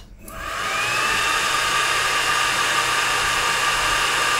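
The xTool D1 Pro 20 W laser module's cooling fan spinning up as the job starts: a whine that rises over about a second, then a steady whir.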